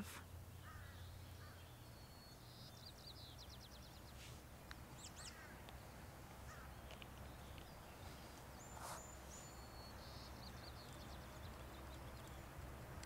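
Faint small-bird calls: a quick high trill, a few short chirps, a thin whistle and a second trill near the end, over a low steady rumble.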